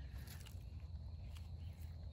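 Faint footsteps on grass and dry leaves over a low, steady rumble on the microphone, with a few soft clicks.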